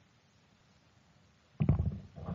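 Quiet room tone, then about one and a half seconds in a brief low, crackly vocal sound from a man, a hesitant throat noise or creaky "uh".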